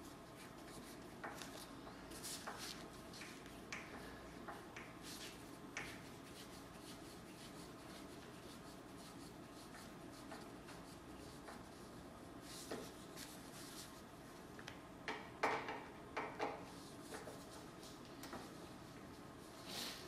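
Faint rubbing and scattered small clicks from a hand tool being worked through convertible-top fabric and padding, with a short run of louder clicks about fifteen seconds in.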